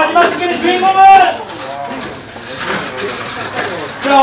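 Men's voices calling out excitedly, with one loud drawn-out exclamation about a second in, then quieter chatter.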